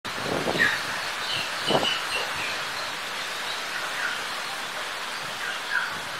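Stormy wind rushing through palm fronds and trees as a steady noise, swelling in gusts about half a second and nearly two seconds in. Short bird calls sound over it several times.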